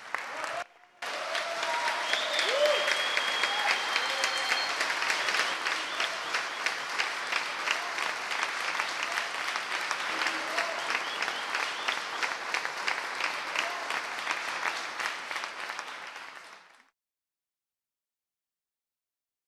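Audience applause: dense, sustained clapping with a few voices mixed in. It starts about a second in and cuts off abruptly near the end.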